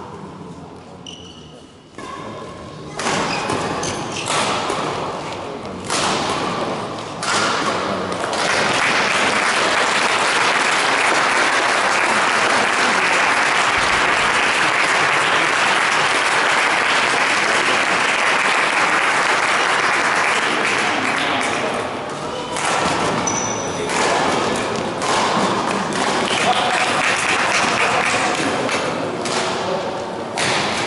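Badminton racket strikes on the shuttlecock as separate sharp knocks during a rally. From about eight seconds in, a loud, steady crowd noise of chatter and applause fills the hall for roughly fourteen seconds, then thins out into scattered knocks and voices.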